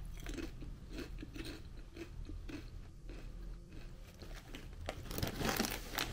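Seaweed-and-salt potato chips being chewed, a quick run of small crunches. Near the end the foil chip bag crinkles.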